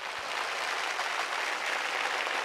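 Audience applauding steadily, many hands clapping at once.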